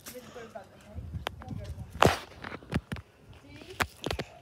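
A few scattered footsteps and knocks, the loudest about two seconds in, with faint voices early on.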